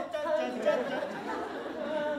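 Several people's voices talking over one another.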